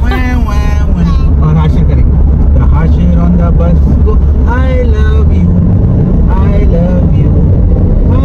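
Steady low rumble of road and engine noise heard inside a moving car, with short stretches of voices talking or singing every second or two.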